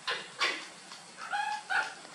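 An animal's short calls: two sharp yelps near the start, then a few brief high squeaks about halfway through.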